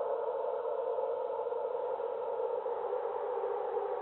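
Steady synthesizer drone or pad of dark ambient music: a held, unchanging wash of sound with no beat or melody.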